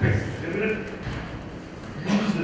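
Only speech: a man talking into a handheld microphone, heard through the hall's sound system.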